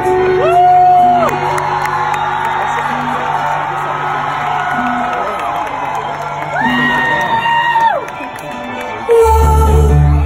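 Live pop music heard from the audience in a concert hall, with fans whooping over it in long held wails. A heavy bass comes in near the end.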